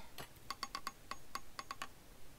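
A rapid, irregular series of about fifteen sharp clicking taps, a cartoon character tapping out a Morse code message (SOS).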